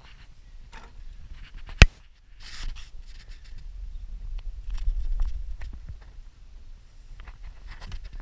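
Low rumble and scattered light knocks of someone moving about with the camera, with one sharp, loud click about two seconds in, followed by a brief moment of silence.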